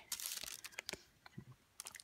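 Faint crinkly rustling of things being handled on a desk, dying away after about half a second into a few light clicks.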